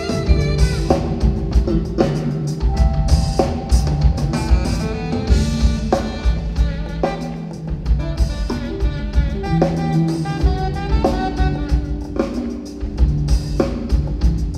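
Live jazz-funk band playing: a saxophone carries the melody over a drum kit beat, electric bass and keyboards.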